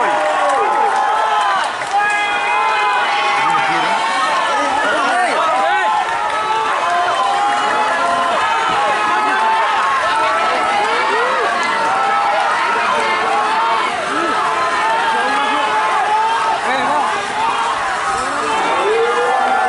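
A crowd of spectators shouting and yelling all at once, a steady din of many overlapping voices with no single voice standing out.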